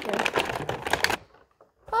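Clear plastic packaging crinkling and clicking as an action figure is worked out of it, for about the first second.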